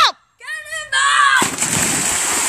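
A yell, then about a second in a big splash as three people jump into a swimming pool together, the churning water loud and sustained.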